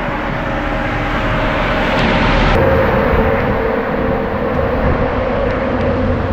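Steady rain falling on a wet road, with a low engine hum beneath it that grows stronger about halfway through.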